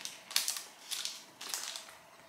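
Mouth crunching a Knoppers wafer bar while chewing, with a few short crunches.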